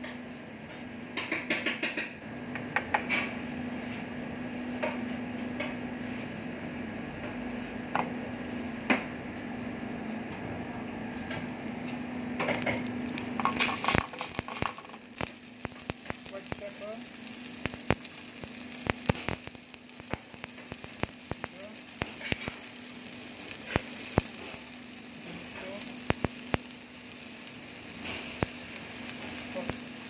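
Tuna, sliced garlic and chili frying in oil in a metal pan: a steady sizzle over a low steady hum. Many sharp clicks and taps of tongs and a spoon against the pan come throughout, thickest a little before halfway.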